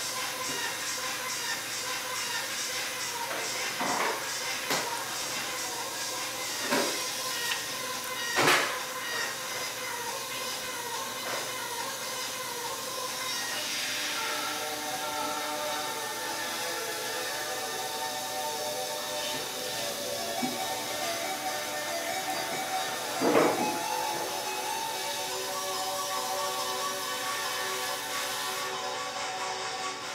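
A turntablist scratch routine playing: sustained tones run throughout, with a few sharp accents, the loudest about 8 and 23 seconds in, and a falling sweep near the middle.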